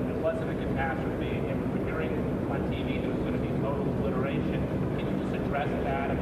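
A steady engine drone with a constant low hum runs under indistinct, off-microphone speech.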